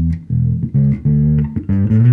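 Electric bass guitar played through a Darkglass Alpha Omega bass distortion pedal, with the blend turned toward the distortion and the drive being raised. It plays a riff of about five held low notes with an overdriven, gritty tone.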